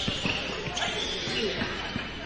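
Basketball game in a gym: a ball bouncing on the hardwood court a couple of times, with faint voices in the hall.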